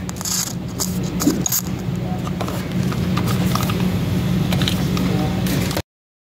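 Thin microphone cable and its connector rattling and scraping as they are handled on a tabletop, over a steady low hum; the sound cuts off abruptly near the end.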